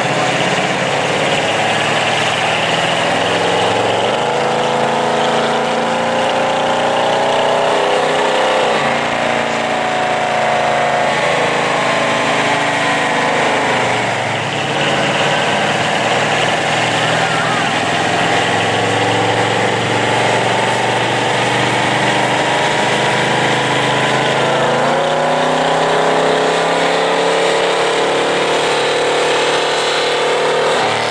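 1990 Chevy Silverado pickup engine running on a chassis dynamometer, its pitch climbing under load and falling back several times.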